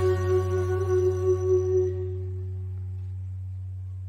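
A live reggae band's final chord ringing out and fading away at the end of a song, over a steady low hum that stays on.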